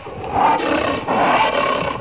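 Animal roar sound effect, rough and growling, rising and falling in long swells that peak about half a second in and again around a second and a half, then fading near the end.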